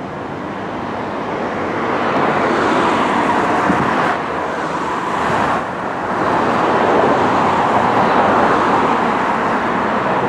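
Road traffic noise: a steady rush of engines and tyres from vehicles moving in traffic close by. It swells over the first couple of seconds, dips twice a little before the middle and builds again.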